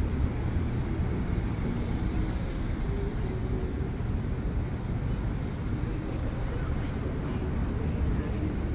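City street ambience: a steady low rumble of traffic with no distinct events.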